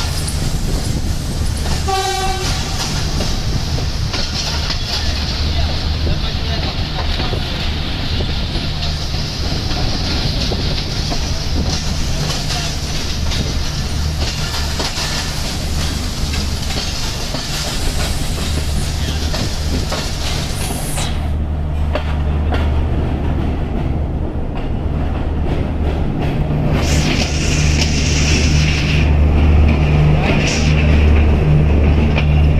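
Passenger train rolling slowly through a station, heard from an open carriage window: a steady low rumble of the carriage and its running gear. A short pitched toot comes about two seconds in.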